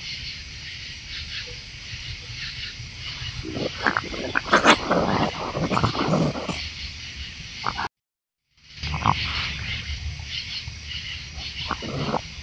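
Raccoons squabbling over food: a burst of rough growls and snarls starts about three and a half seconds in and lasts about three seconds. Underneath runs a steady high chirring of night insects.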